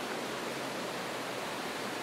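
Steady rushing of a fast-flowing river running over rapids.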